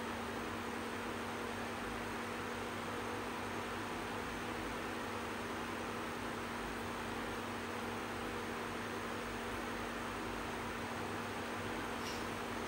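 Electric fan running: a steady whoosh of air with a constant motor hum.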